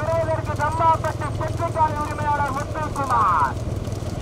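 A voice talking fast and continuously, over a steady low rumble of motorcycle engines.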